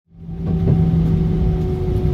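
Airliner cabin noise: a steady low engine rumble with a few held hum tones, fading in over about the first half second.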